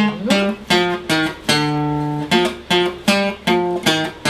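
Acoustic guitar strummed in a steady rhythm, about two or three chord strokes a second, with one chord held for nearly a second partway through.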